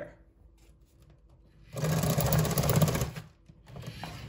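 LEGO robot's electric motors and plastic gear train running for about a second and a half, a fast, even mechanical buzz that starts and stops abruptly.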